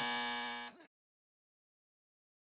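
Cartoon sound effect: a retro video-game-style electronic buzzing tone with many harmonics holds steady, then cuts off abruptly a little under a second in.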